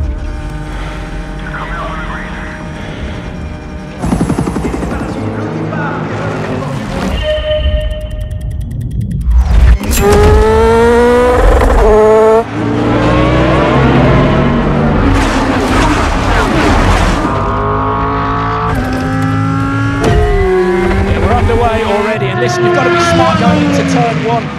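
Race car engines revving up in a film's race-start sound mix, climbing in pitch again and again as they accelerate. A brief thinner passage comes just before the halfway point, and the engines are loudest after it.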